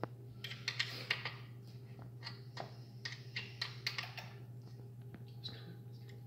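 Irregular light clicks and crinkles from cats playing in a crumpled sheet of white foam packing material on a tile floor, over a steady low hum.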